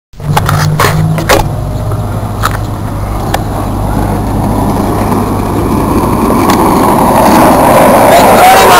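Skateboard wheels rolling on asphalt, growing steadily louder as the board approaches, with a few sharp clicks in the first few seconds.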